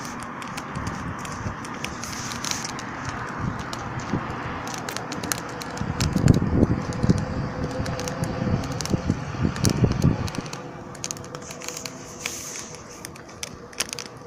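Wood logs burning in a steel barbecue grill, crackling and popping throughout, with a louder low rumble for a few seconds in the middle.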